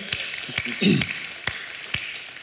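Audience applauding, with a few sharp hand claps close to the microphone and a brief voice about a second in.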